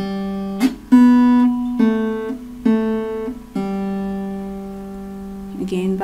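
Acoustic guitar picking a slow single-note melody on the G and B strings: open G, open B, A at the second fret twice, then open G let ring for about two seconds.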